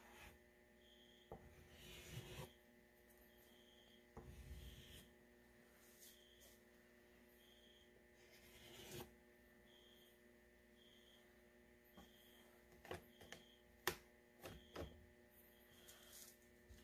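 Near silence: a faint steady electrical hum, with now and then the soft rub of an oil pastel stick stroking across paper.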